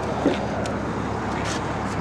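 A steady, even rush of background noise with no distinct events.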